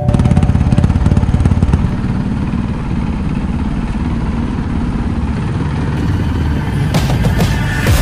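Motorcycle engine running with a rapid, low pulsing note, loudest in the first two seconds, mixed with background music.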